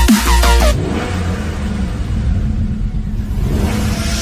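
Electronic intro music that stops less than a second in, giving way to a car engine sound effect running low and rough.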